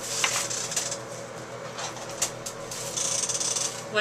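Wig package being picked up and handled: rubbing and rustling with a few light knocks, busiest about three seconds in.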